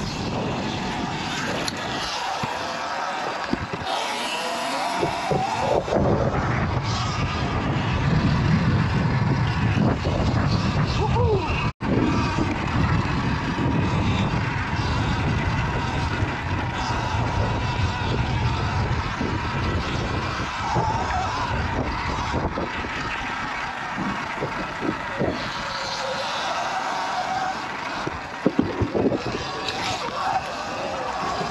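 Sur-Ron electric dirt bike being ridden over grass and dirt: continuous rushing wind and riding noise, with scattered knocks from bumps and a cluster of them near the end. The sound cuts out briefly about twelve seconds in.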